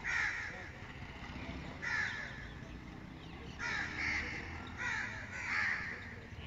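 Crows cawing: short harsh calls repeated about six times, some in quick pairs.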